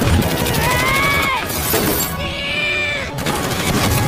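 Movie battle sound mix: rapid gunfire crackling over a heavy rumble, with two long, arching screeches from flying creatures, one about a second in and one in the middle.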